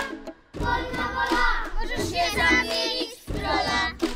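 A song sung by a group of children's voices in short phrases, with brief breaks about half a second in and just after three seconds.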